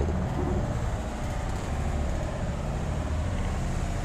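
Low, steady outdoor rumble with no distinct events, such as street traffic or wind on the microphone.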